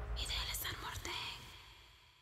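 A brief breathy whisper, over the low tail of the trailer's music fading out to silence.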